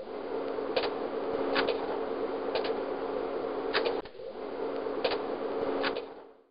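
Steady low hum and hiss of background noise, with five sharp clicks spaced roughly a second apart; the noise drops out briefly about four seconds in, then returns.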